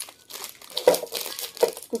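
Plastic snack bag of wafer sticks crinkling in the hand, a run of quick rustles and crackles.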